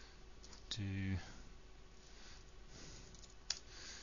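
A few sparse computer keyboard keystrokes as code is typed, the sharpest click near the end, with one short spoken word about a second in.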